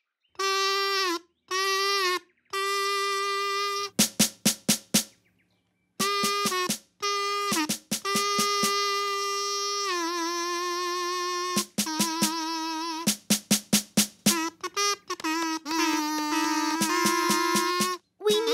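Kazoo buzzing a simple tune in held notes, stopping and starting, with the pitch stepping down about ten seconds in. A drum is beaten in quick runs of hits from about four seconds in, and near the end a second kazoo plays along.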